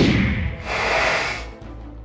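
Added sound effect over background music: a rushing noise fades out in the first half-second, then a steady hiss of about a second follows.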